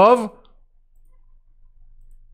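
A man's spoken word trails off, then quiet room tone with a faint low hum and a few faint computer mouse clicks.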